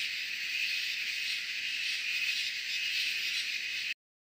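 Steady night-time insect chorus, cricket-like, with hiss from the trail camera's microphone. It cuts off abruptly just before the end.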